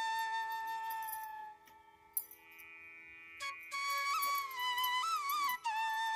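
Background devotional music: a flute holds one long note over a steady drone, breaks off for a second or two, then returns with a winding, ornamented melody.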